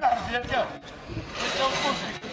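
Men talking and calling out to each other, with short overlapping phrases and a louder call near the end.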